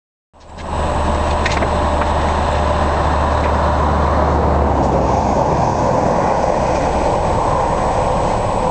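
Steady, loud rumble of an idling vehicle engine, with a deep low hum that drops away about five seconds in.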